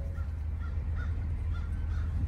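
Ford 6.2-litre V8 idling steadily on compressed natural gas, heard from inside the truck's cab as a low, even rumble.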